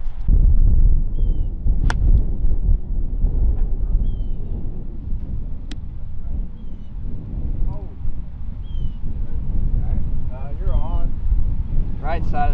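Wind buffeting the microphone with a low rumble, and about two seconds in a single sharp click of a 50-degree wedge striking a golf ball.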